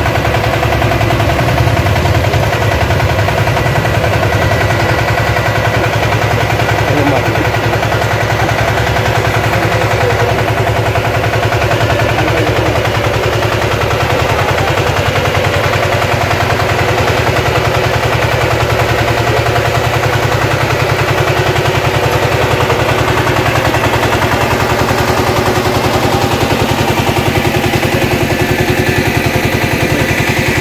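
Engine of a Kamco walk-behind power tiller running steadily, a rapid even beat of firing strokes.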